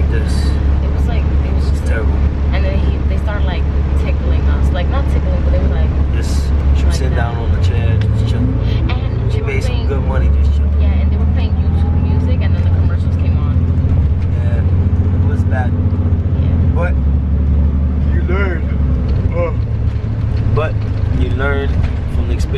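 Express bus engine and road drone heard from inside the cabin, low and steady. About seven seconds in the drone shifts, and a whine climbs in pitch over the next few seconds as the bus accelerates.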